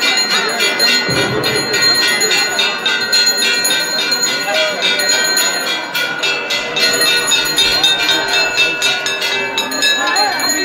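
Temple bells rung rapidly and continuously during an aarti, a dense ringing of many overlapping tones, over a crowd's voices.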